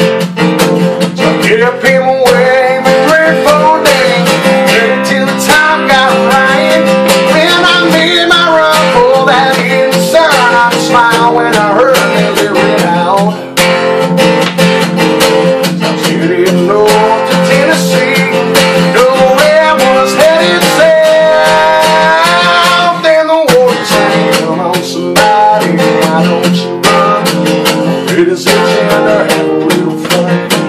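Steel-string acoustic guitar strummed in steady chords while a man sings over it.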